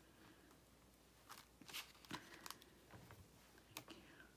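Near silence with a few faint, short clicks and rustles of paper and plastic as the hinged clear plate of a stamping platform is lifted off the stamped paper.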